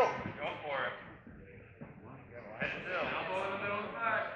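Speech only: a man calls out "Let's go" at the start, then shouts again from about two and a half seconds in.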